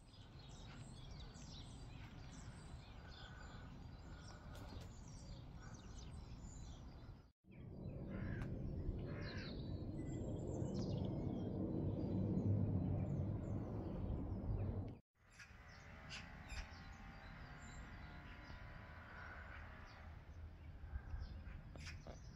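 Outdoor garden ambience: wind rumbling on the microphone, loudest in the middle stretch, with birds calling over it. The sound cuts out briefly twice.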